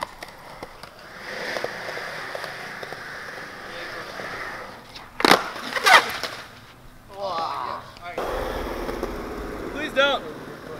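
Skateboard wheels roll on concrete. About five seconds in, the rider bails a fakey big spin and the board and his body hit the concrete with two loud cracks less than a second apart. Voices follow near the end.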